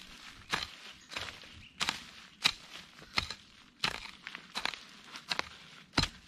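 Axe chopping down into the ground to dig out a spring bamboo shoot, with evenly paced strikes about every two-thirds of a second, around nine in all.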